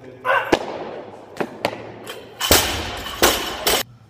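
A loaded barbell with rubber bumper plates dropped onto a lifting platform: a few sharp clicks, then two loud, rattling crashes in the second half as it lands and bounces.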